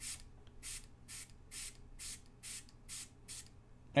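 Eight short hisses of air at the vacuum valve of a Nauticam underwater camera housing, about two a second, as air is let in bit by bit to break the vacuum, the way it goes when the vacuum slowly fails.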